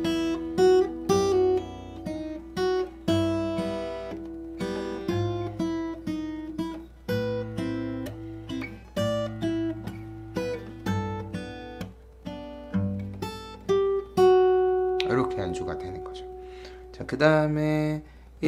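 Steel-string acoustic guitar played fingerstyle at a slow tempo: picked melody notes and chord tones over thumbed bass notes. A note rings on for a few seconds near the end.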